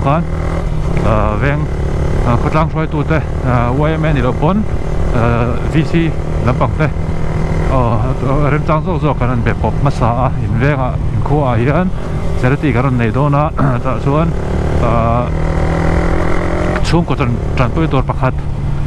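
Sport motorcycle's engine running steadily while riding, heard from the rider's position, with a person talking over it almost throughout.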